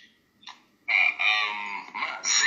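A short faint blip, then a drawn-out animal call about a second in, lasting around a second and a half.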